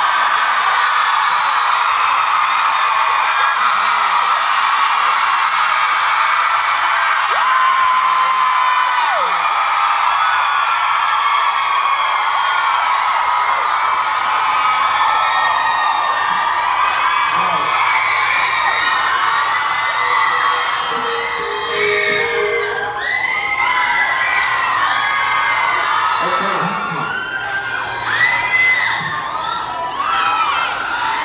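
Concert audience screaming and cheering without a break, a dense mass of many overlapping high-pitched screams and whoops.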